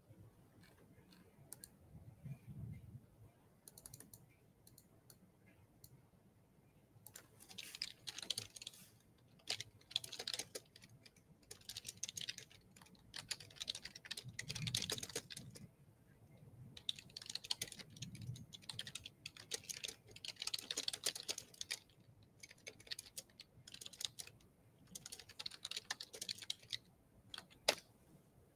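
Faint typing on a computer keyboard with clicks, in short irregular runs of keystrokes starting several seconds in.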